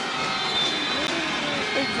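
Basketball arena crowd noise and cheering right after a shot drops at the quarter-ending buzzer, with a few faint high tones held through it.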